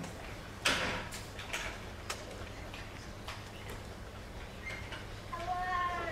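Animal calls: a sharp, harsh cry about half a second in, a few shorter cries after it, and near the end a longer call with several overtones that falls in pitch.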